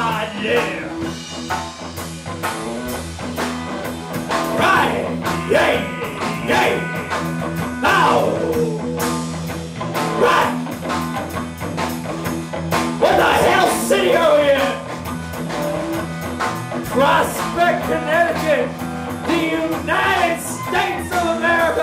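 Live blues-rock band playing at full volume: electric guitars, bass and drums with a lead vocal line that bends and slides over the top.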